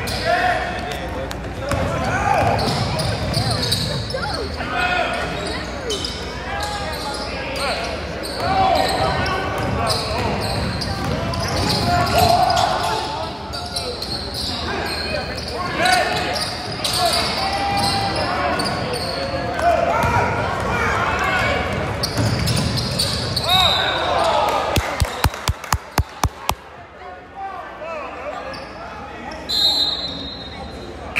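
Basketball game sounds: spectators' voices throughout, with the ball bouncing on the hardwood court. About 25 seconds in there is a quick run of sharp bounces, a ball being dribbled hard. A short high tone starts right at the end.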